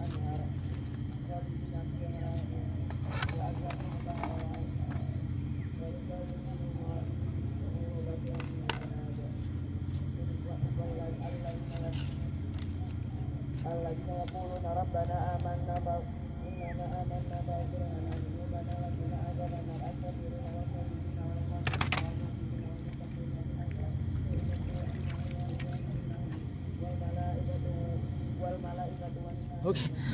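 A steady low mechanical drone, such as ship engines or generators running in a harbour, with faint distant voices drifting over it and a few light clicks.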